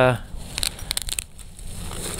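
Handling noise close to the microphone: a short burst of crinkly rustling and several sharp little clicks about half a second to a second in, then it settles. This is consistent with gear being rummaged for and taken out by hand.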